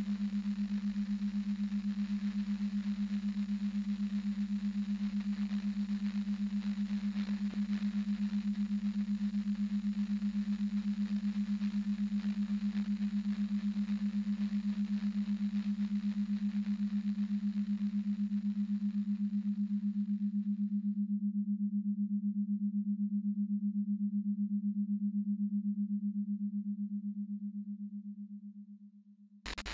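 A steady, low synthesized sine-like tone holding one pitch, with a hiss like radio static over it. The static cuts off about two-thirds of the way through, leaving the bare tone, which fades out near the end.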